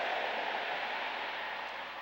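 A steady static-like hiss that swells in just before and eases slightly toward the end.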